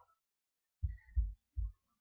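Three short, low, dull thumps about a third of a second apart, starting just under a second in, with near silence between them.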